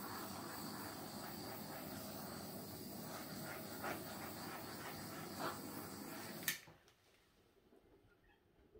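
Small handheld torch flame hissing steadily as it is played over wet acrylic paint to bring up small cells. It cuts off with a click about six and a half seconds in.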